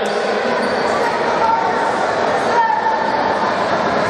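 Steady chatter of a large crowd of spectators in an indoor gym, many voices blending into a dense, even murmur.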